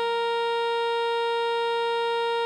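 An alto saxophone holds one long note, written G5, steady and unchanging, over a sustained E-flat major keyboard chord.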